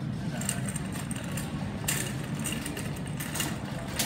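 Supermarket background noise while walking the aisles: a steady low rumble with a few short clicks and rattles.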